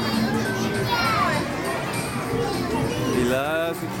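Young children's voices, calls and babble over general chatter in a busy play area, with music playing underneath; a child's high rising calls stand out near the end.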